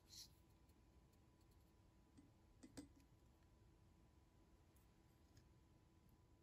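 Near silence with a few faint clicks from handling a plastic TDS tester pen over a glass of water. The loudest click comes near three seconds in.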